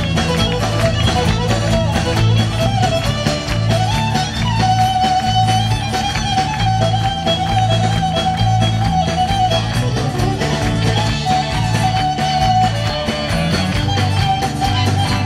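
Live band playing an upbeat tune, the fiddle carrying the melody over a pulsing electric bass, drums and strummed acoustic guitar.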